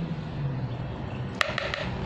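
A single sharp clink with a short ring about one and a half seconds in, as a glass jar of cocoa powder is set down on a tiled counter, over a low steady hum.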